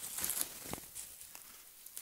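Rustling and crinkling of a fabric softbox being handled and fitted onto a light panel, with a couple of light knocks near the middle.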